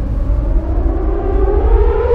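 A dramatic soundtrack swell: a siren-like drone that rises slowly in pitch and grows louder over a low rumble.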